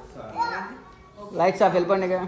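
Speech only: voices in a room, including a child's, with a louder bout of talking in the second half.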